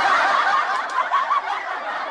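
Laughter from many people at once, slowly dying away.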